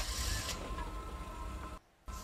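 Steady low rumble of a car interior from the episode's soundtrack, with faint mechanical noise over it; it cuts off abruptly near the end.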